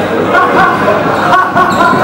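Dodgeballs bouncing and smacking on a wooden court and off players during a dodgeball rally, with several players' voices calling out over it. The hall is large and reverberant.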